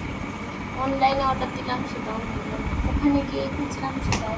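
Quiet, indistinct speech from women in a room, in short snatches about a second in and near the end, over a steady low rumble and a faint steady high-pitched whine.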